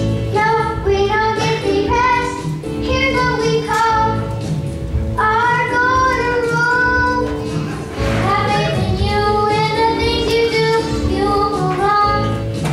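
Fourth-grade children singing a song together with musical accompaniment, in phrases with a short break about two-thirds of the way through.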